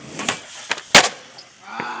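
Skateboard landing a backside heelflip down a set of stairs: three sharp smacks of the board and wheels hitting the ground, the loudest about a second in.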